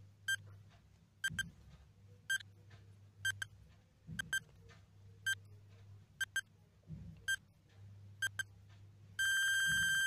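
Countdown timer sound effect beeping about once a second, many of the beeps doubled, ending in one long steady beep near the end as the count reaches zero. A faint low hum runs underneath.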